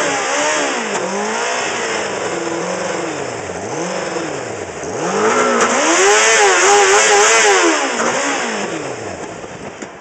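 Honda CBR600RR inline-four engine being blipped on the throttle, its pitch rising and falling again and again about once a second, held high for a couple of seconds past the middle, then falling away near the end.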